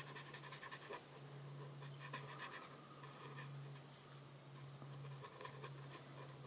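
Faint scratching of a felt-tip marker nib as it colours in short strokes on a card, over a steady low hum.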